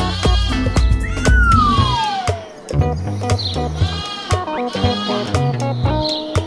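Lamb bleating several times over upbeat cartoon background music, with a long falling gliding tone about a second in.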